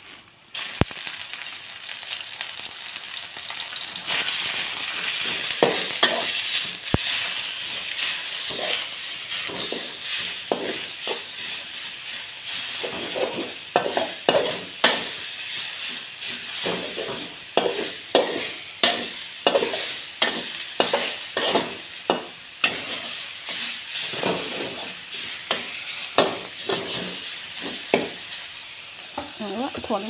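Minced pork and garlic sizzling in hot oil in a steel wok, with a metal spatula scraping and stirring across the pan about once or twice a second. The sizzle grows louder within the first few seconds as the pork goes in.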